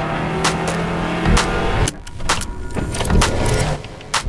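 A car engine running and rising slightly in pitch as it accelerates, with several sharp hits cut in over it.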